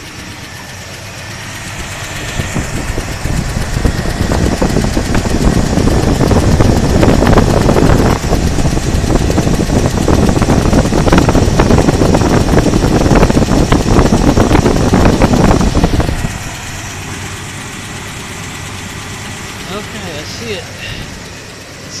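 Engine of a 1976 Chevy Blazer running with the air cleaner off, heard up close at the open Holley four-barrel carburetor. It grows louder from about two seconds in, stays loud for about twelve seconds, then drops back to a steadier, quieter running sound.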